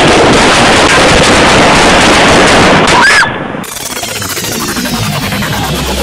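A rapid string of gunshots, loud and heavily distorted, running close together for about three seconds. It then drops off suddenly to a lower, steadier din.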